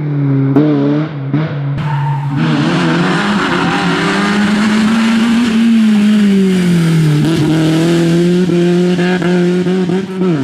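BMW E30 rally car engine working hard at high revs. Its pitch drops with quick gear changes in the first two seconds, then climbs and falls again mid-way, with tyre noise under it.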